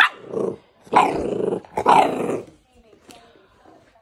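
Bull terrier making rough growling barks in play: a short one at the very start, then two longer, louder ones about a second and two seconds in.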